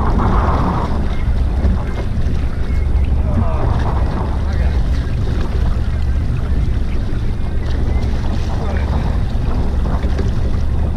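Steady wind rumbling on the microphone over water washing against a small boat's hull at sea.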